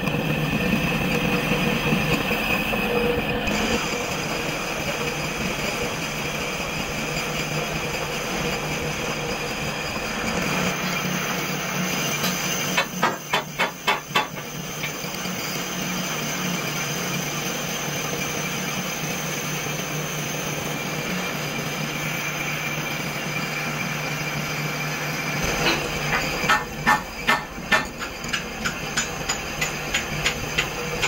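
Metal lathe turning a metal ring with a single-point tool: the steady sound of the machine running and the tool cutting. Twice, about halfway through and again near the end, there comes a short run of loud, evenly repeated pulses, a few per second.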